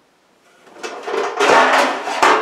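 Pans clattering and scraping as a baking pan is pulled out of a lower kitchen cabinet. The noise starts about half a second in and is loudest near the end.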